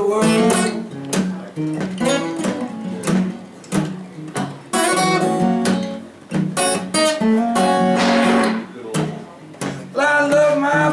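Mahogany acoustic guitar playing an old-time blues instrumental break, strummed chords mixed with picked notes in a steady rhythm, just after the last sung word of a line.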